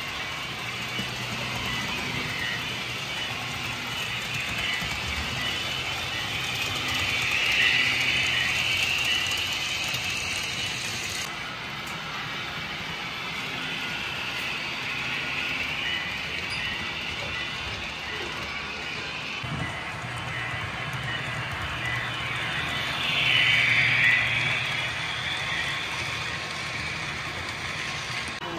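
Model freight train pulled by Chicago & North Western F-unit diesel locomotives running on the layout track: a steady rolling of wheels on rail with a motor hum, swelling louder twice as the train passes close by.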